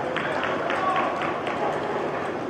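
Quick running footsteps on artificial turf, about four a second, with people's voices shouting in the background.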